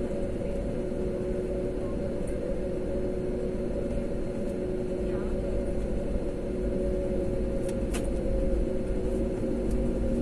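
Airliner cabin noise during taxi: the jet engines' steady hum with two steady tones over a low rumble, heard from inside the cabin. A brief click comes about eight seconds in.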